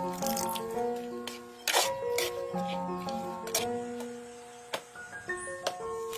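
Instrumental background music, a melody of held notes, with several sharp knocks over it; the loudest comes a little under two seconds in.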